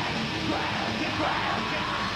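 Black metal band playing live: distorted electric guitars and drums, with harsh screamed vocals over them.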